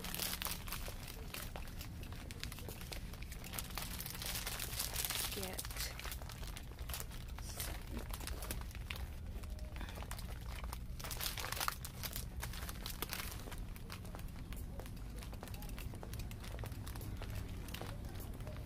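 Crinkling and rustling of a foil package and plastic bottle carried in hand, in irregular bursts, over a steady low hum.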